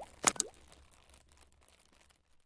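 Logo animation sound effects: a couple of sharp pops in the first half-second, one carrying a short rising tone, then a faint tail that fades away.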